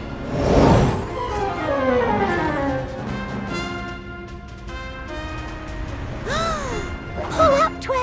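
Cartoon score and sound effects: a loud whoosh-like swell about half a second in, followed by a cascade of falling tones. Steady music notes follow, and a few quick up-and-down electronic bleeps come near the end.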